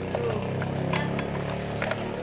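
Small metallic clicks and clinks as a scooter's starter pinion gear, fitted with a new bushing, is slid onto its shaft by hand, over a steady low hum.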